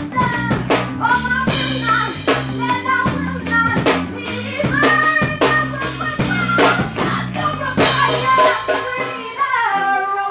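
Live reggae band music: a woman singing over strummed acoustic guitar and a drum kit, with a steady low bass line under it.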